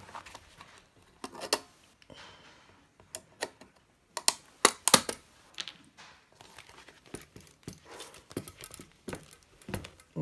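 Needle-nose pliers clicking and scraping against a metal binder-ring mechanism as it is pried out of a planner binder. The clicks are irregular, some in quick clusters, and the loudest come about five seconds in.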